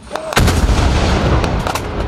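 A shell explosion goes off about a third of a second in, with a deep rumble that rolls on, and a couple of sharp cracks near the end.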